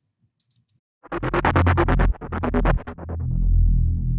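Electronic music playback: a deep synth sub bass with a bright synth layer pulsing rapidly in an even rhythm, starting about a second in after a short silence. The bright pulsing fades out near the end, leaving the sub bass.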